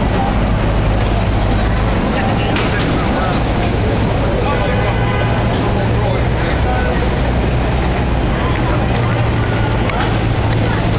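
Busy street noise around a cable car line: a steady low rumble and hum, with people talking in the background and a few sharp clicks, one a few seconds in and two near the end.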